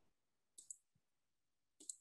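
Faint clicks of a stylus tapping and stroking on a tablet screen as a formula is handwritten, in two short clusters: one just over half a second in and one near the end.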